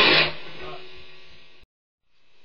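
Distorted electric guitar riff, a Jackson DK-2 through a small Laney amp, stopped abruptly about a quarter second in; the last notes ring out and fade, then the sound cuts out completely about a second and a half in.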